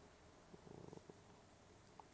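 Near silence: room tone, with a faint low murmur for about half a second near the middle.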